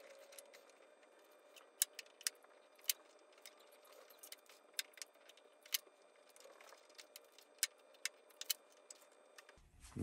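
Quiet, scattered small sharp clicks and taps from handling a 3D-printed plastic tool rack as magnets are fitted into its slots, over a faint steady hum.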